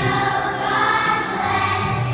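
A children's choir singing a song together, holding long notes.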